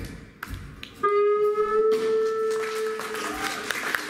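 Live blues band: a brief near-lull, then about a second in a single long held note that rings steadily for about two seconds, its brightness fading away.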